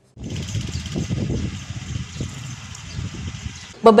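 Low rumbling outdoor background noise with a faint hiss, starting just after a brief silence and easing off a little over the next few seconds.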